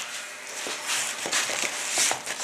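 Thick epoxy resin and ATH filler mix being stirred and scraped in a plastic tub: an irregular scratching with small clicks.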